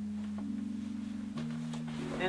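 Background music: soft sustained low chords that change twice.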